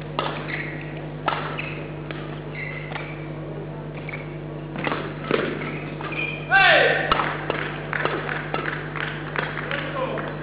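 Badminton rally in a sports hall: the shuttlecock is struck back and forth with sharp racket smacks, and court shoes make short squeaks on the floor. The loudest sound is a longer squeal about six and a half seconds in.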